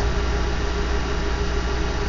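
Steady low mechanical hum under a light hiss, at an even level, like an engine idling.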